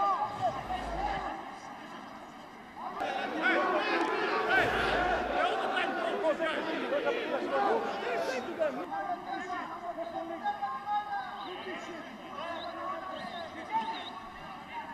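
Several men's voices shouting and talking over one another on a football pitch, picked up by pitchside microphones. They become louder and busier about three seconds in, then ease off again.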